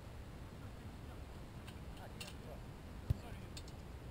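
Steady low wind rumble on the microphone with faint, distant shouts from players on a soccer field, and a single sharp thump about three seconds in.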